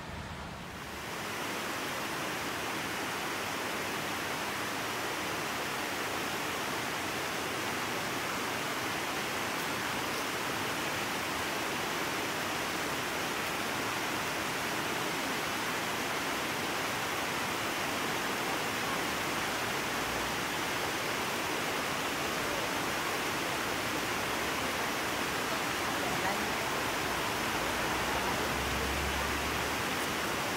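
Mountain stream rushing over a bedrock slab: a steady, even roar of running water that starts about a second in.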